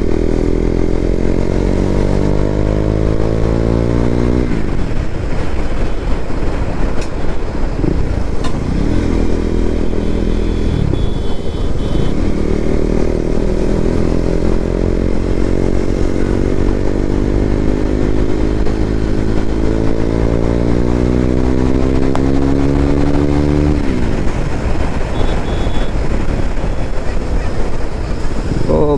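KTM Duke 390's single-cylinder engine pulling hard through its stock exhaust, heard from the saddle. The pitch climbs, falls sharply about four seconds in, then climbs steadily for a long stretch before falling sharply again near the end.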